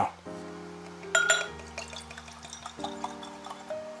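Soft background music with steady held notes, under whiskey being poured from the bottle into a tasting glass, with a sharp clink about a second in.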